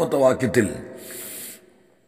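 A man speaking Malayalam, his phrase trailing off in the first second, followed by a short soft hiss and then near silence.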